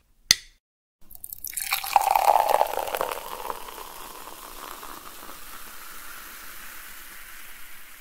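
Sound effect of a drink being poured into a glass: liquid splashing in, loudest about two seconds in, then settling into a steady hiss that slowly fades.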